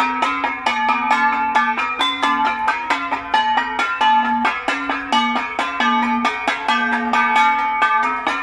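Several Cordilleran flat gongs (gangsa) beaten with sticks in a fast, even rhythm, several strokes a second, each stroke ringing at its own pitch so the gongs interlock into one running pattern.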